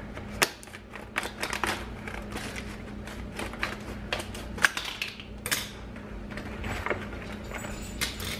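Scissors snipping and crunching through stiff clear plastic blister packaging, a run of irregular sharp clicks and crackles.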